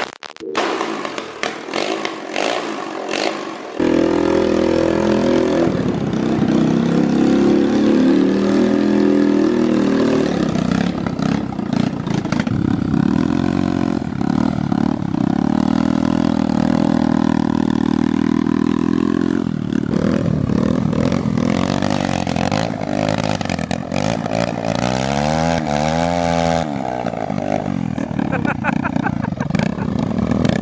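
Air-cooled motorcycle engine on a shopping-cart go-kart starting up about four seconds in, then running steadily. Near the end its revs rise and fall as the throttle is worked.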